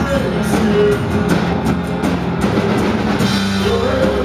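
Live rock band playing: drum kit beating out a steady rhythm under electric and acoustic guitars, with a singer's voice coming in near the end.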